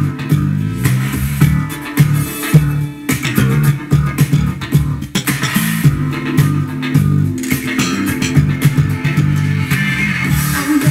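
Status 3000 carbon-fibre headless bass played slap-style through a Behringer bass preamp and Carlsbro combo amp, a busy funk line of thumb slaps and popped notes over a funk backing track.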